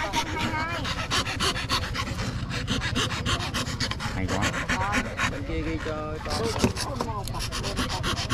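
Hand fret saw cutting out script lettering from a thin board of gáo vàng (yellow cheesewood), its fine steel blade rasping through the wood in quick, even strokes.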